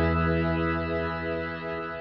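Closing chord of a heavy rock song ringing out: distorted electric guitar and bass holding one chord as it fades away, the low bass note dying out near the end.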